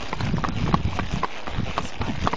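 Hooves of a Hanoverian x trotter and a second horse beside it clip-clopping on a paved road, several strikes a second.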